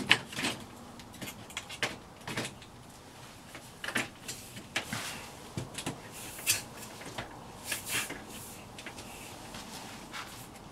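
An Andersen 3000 storm door being shifted and held in the entry door opening: a string of irregular knocks, taps and light rattles as its frame bumps against the door frame.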